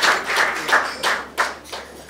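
Audience applause dying away, thinning out in the second half to a few scattered claps.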